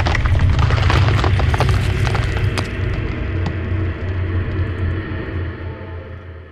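Sound effect of a concrete wall bursting apart: a deep rumble with scattered crumbling-rubble clicks in the first few seconds, dying away steadily, under a held musical tone.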